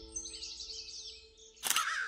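Faint small-bird chirping over soft sustained music, then crows start cawing, louder, near the end.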